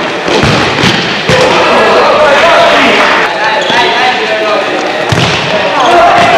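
Shouting voices of players and spectators in an indoor sports hall, with a few sharp thuds of a futsal ball being kicked and bouncing on the hard court near the start and again about five seconds in.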